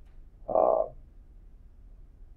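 A man's short, low, creaky hesitation sound, like a drawn "uhh" or grunt, about half a second in and lasting a third of a second, then only faint room tone.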